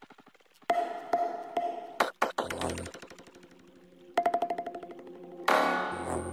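Electronic dance music in a broken-up passage: rapid stuttering repeats that fade out between short gaps, with a louder, fuller section coming in near the end.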